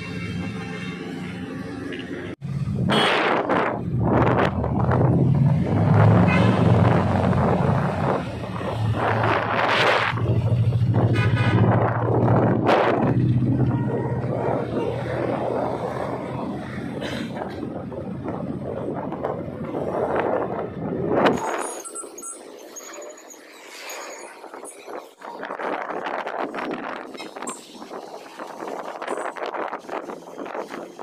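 Motor scooter riding along a road: wind rumbling on the microphone over the engine and passing traffic. About two-thirds of the way in, the sound cuts abruptly to quieter street traffic without the rumble.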